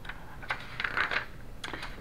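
Paper rustling with a few light clicks and taps as a hardcover picture book is handled and its page turned, in a few short bursts.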